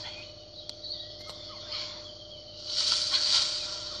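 Jungle ambience of insects and birds from a film soundtrack, with a steady faint hum and hiss underneath; a louder hissing swell comes about three seconds in.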